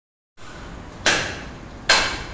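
Butcher's cleaver chopping into a hanging carcass: two sharp strikes a little under a second apart, each with a brief metallic ring.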